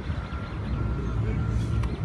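Low, steady rumble of a motor vehicle's engine running, with a faint thin tone above it.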